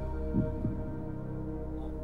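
Game-show tension music bed under a quiz question: a low, steady drone of sustained tones.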